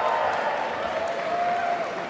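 Audience applause, a steady clapping that swells just before and holds until the next name is read, fading near the end.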